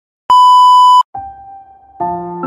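A loud, steady, high-pitched censor-style bleep sound effect lasting under a second, followed by a quieter, lower steady tone.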